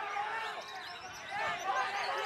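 Dense chorus of caged songbirds, white-rumped shamas among them, singing many overlapping whistled notes that glide up and down.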